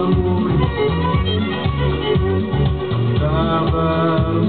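Recorded music with a steady beat played back from a cassette on a Vega MP-120 stereo cassette deck.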